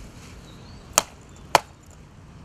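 Two sharp blows of a homemade metal priest striking a rainbow trout's head, about half a second apart, dispatching the fish.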